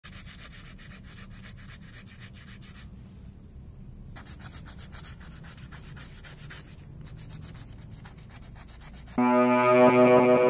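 Quick, even rubbing or scraping strokes worked by hand, about seven a second, stopping for about a second around three seconds in. Loud guitar music comes in about nine seconds in.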